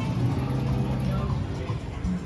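Background music with held low notes that change in steps.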